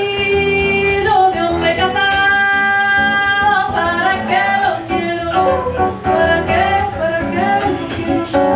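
A woman singing long held notes that slide between pitches, with a plucked acoustic guitar accompanying her.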